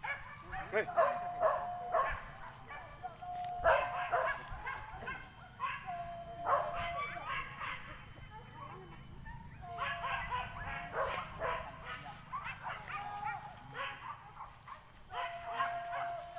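Boar-hunting dogs barking and yelping in repeated bursts every couple of seconds, the pack giving voice while on the chase of a wild boar.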